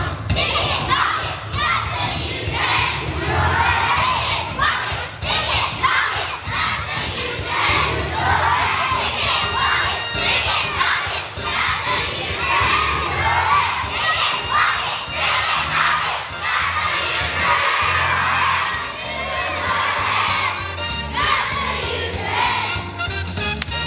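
A large group of young children singing loudly together in unison, with a steady low accompaniment underneath.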